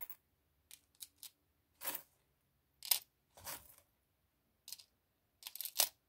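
Small metal charms clicking and clinking as a hand moves through a tray of them, with soft rustles, in a string of separate short sounds; the loudest comes near the end.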